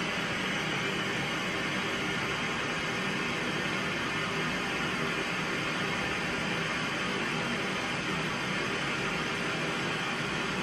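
A steady, even hiss of noise with a faint low hum underneath, unchanging throughout.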